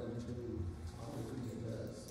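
A man's voice from the pulpit, distant and echoing in the church hall, in low drawn-out tones with no clear words.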